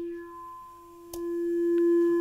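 Electronic keyboard holding one pure, steady note. A click comes about a second in, and after it the note grows louder.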